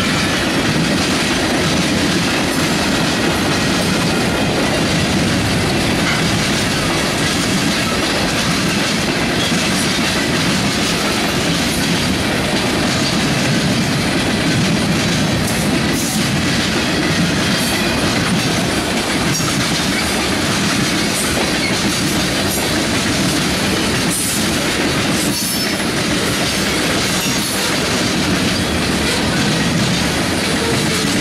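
Freight train's tank cars and covered hopper cars rolling past close by: a steady, loud rumble and clatter of steel wheels on rail.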